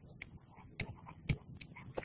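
Faint taps and light scratching of a stylus writing on a tablet, with a few sharper ticks near the middle.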